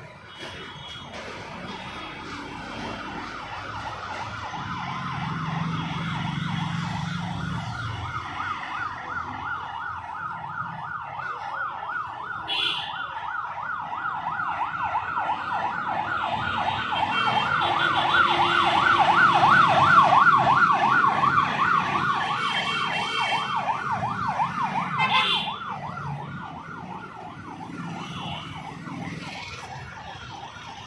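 An emergency vehicle's siren in a rapid warble, growing louder toward the middle and then fading as it passes by.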